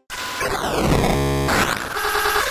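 An electronic noise whoosh with a falling sweep, and a short buzzy synth tone about a second in, cutting in after the music breaks off.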